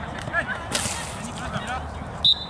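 A single sharp smack of a football struck hard, about three-quarters of a second in, with players shouting around it.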